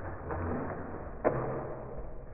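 A small dog's paws drumming on a flat agility plank raised on small feet as it runs across, with one sharp knock of the board a little past the middle.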